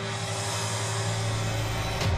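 A steady low hum with a hiss over it and several held tones, unchanging throughout.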